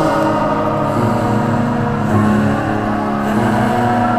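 Experimental electronic music: a dense, steady layering of sustained tones over a low drone, the low layer growing stronger about a second in.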